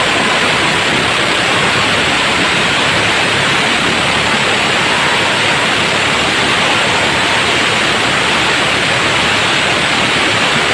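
Steady, loud rushing noise of wind and water spray from a small open motorboat running at high speed, with no engine note standing out.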